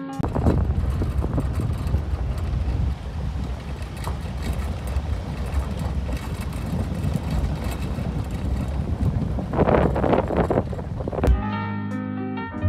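Vehicle driving on a gravel dirt road: steady low tyre and engine rumble with scattered small ticks and wind on the microphone, with a louder rush about ten seconds in. Plucked-string music stops at the start and comes back just before the end.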